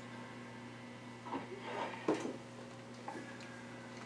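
Quiet room tone with a steady electrical hum, and a few faint soft knocks and rustles near the middle.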